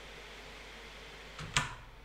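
Quiet room tone in a small room, with one short noise about one and a half seconds in.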